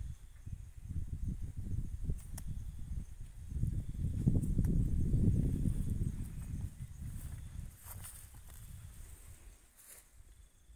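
Low rumbling noise on the microphone, loudest in the middle, with a few faint clicks.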